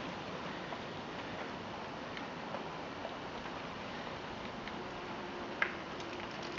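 Low steady hiss of outdoor background noise with a few faint scattered clicks, one a little more distinct near the end.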